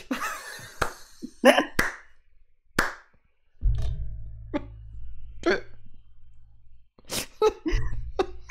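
A man laughing hard in short separate bursts. A low steady hum comes in about three and a half seconds in and cuts off about three seconds later.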